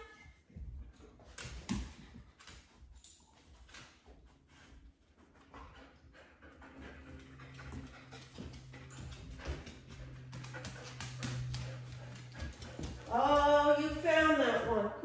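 A border collie moving about and sniffing along kitchen cabinets, with many light ticks and clicks throughout, like claws on a hard floor. A faint low hum runs for several seconds in the second half.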